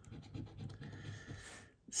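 A coin scraping the scratch-off coating of a lottery ticket: a quick, faint run of short scrapes that stops shortly before the end.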